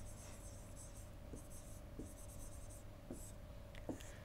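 Faint scratching of a stylus writing a word on a tablet, coming in short spurts of strokes with small ticks between them.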